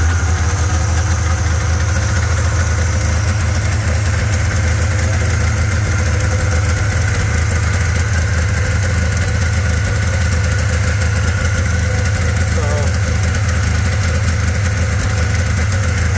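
Polaris XLT three-cylinder two-stroke snowmobile engine, warm and just started, idling steadily at a fast idle of about 2000 RPM. Its three carburetors are slightly out of balance, with the PTO-side carb pulling more vacuum because its slide is set too low.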